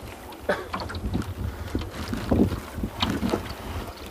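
Wind buffeting the microphone on open lake water: a steady low rumble, with a few short faint knocks.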